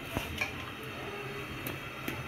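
A ladle stirring thick dal in a pressure cooker, knocking lightly against the pot a few times.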